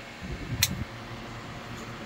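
A single sharp snip of scissors cutting through the main stem of a young cannabis plant to top it, a little over half a second in, over a steady fan hum.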